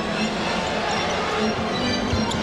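Music with long held notes over the sound of a basketball game in play.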